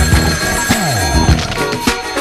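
Soul-funk instrumental backing of a 1971 novelty 45, with drums and a bass line that slides down in pitch about a second in, and a telephone bell ringing over the music.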